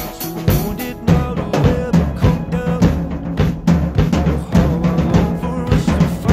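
Pearl acoustic drum kit played in a steady beat, with kick, snare and cymbal hits, over the recorded pop song's backing music.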